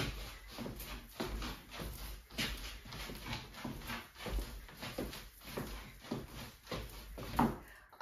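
Feet stepping, swivelling and kicking through a Charleston step on a wooden floor: a string of irregular soft thumps and scuffs, two or three a second, with a louder one near the end.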